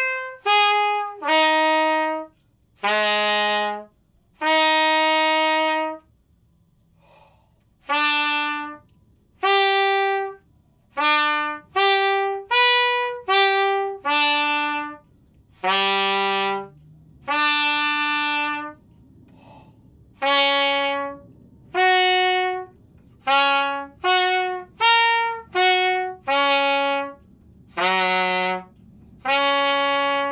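Trumpet playing a lip-flexibility exercise in 'honked' notes: each note is started with a push of air instead of the tongue and cut off, so the harmonics come as separate short notes with small gaps, stepping up and down. Each phrase ends on a longer held note, with a pause of a second or two between phrases.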